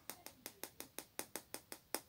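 A quick, even run of light clicks, about six a second, from a small clear pot of gold embossing powder being shaken and tapped to sprinkle the powder onto a stamped card.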